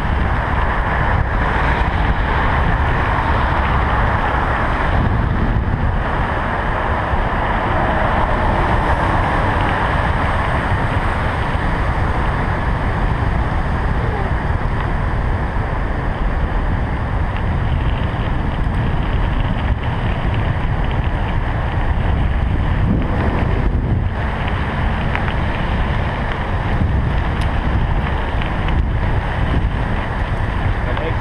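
Steady wind noise buffeting the microphone of a bicycle-mounted action camera while riding, over the rumble of tyres on a gravel path.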